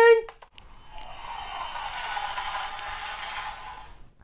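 A whooshing hiss, about three seconds long, that swells gently and then fades: an edited-in whoosh sound effect.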